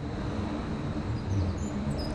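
Urban harbour ambience: a steady low hum of city and harbour noise, with a few faint high bird chirps in the second half.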